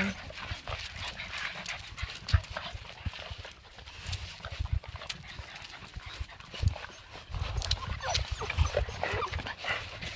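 A litter of puppies scuffling and playing on pavement: many small irregular clicks and taps of paws and claws, a few faint high squeaks, and low bumps.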